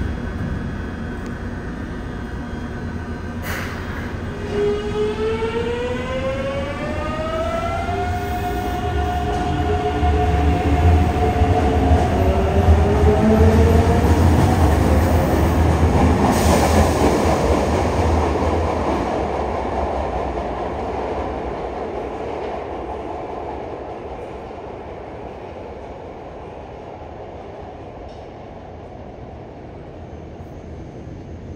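Yokohama Municipal Subway 3000A-series train pulling out, its Mitsubishi GTO-VVVF inverter whining in several tones that climb in pitch in steps as it accelerates. A loud rumble of wheels and motors follows as the cars pass, then fades away over the last several seconds. A sharp click comes just before the whine starts.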